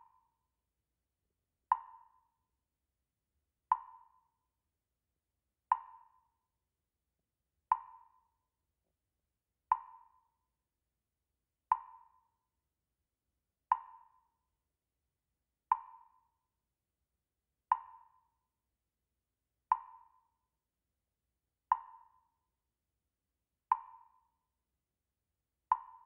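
A percussive tick repeating evenly about every two seconds, about thirteen times. Each tick is a short knock that rings briefly and dies away, with silence between.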